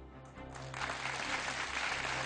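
Studio audience applause starts about half a second in and grows louder, over a steady background music bed.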